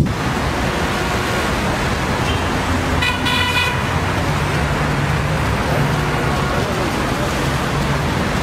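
Street traffic noise with a steady low rumble of engines, and a car horn sounding once, briefly, about three seconds in.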